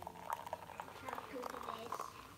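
Hot chocolate poured in a thin, steady stream from a milk-frother jug into a ceramic mug: a faint trickle of liquid with small splashes.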